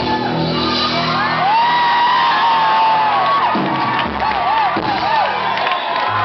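A rock band's final chord rings out and stops about three and a half seconds in, while the audience whoops and shouts at the end of the song.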